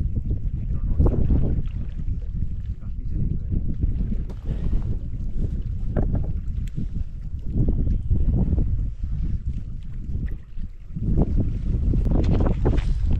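Strong wind buffeting the microphone in gusts, a loud low rumble that eases briefly near the end before rising again.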